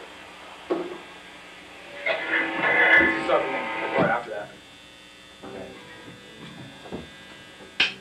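Steady electrical hum from the band's amplifiers between songs, with a few seconds of indistinct voice in the middle. Near the end comes a single sharp click, the first of a drumstick count-in.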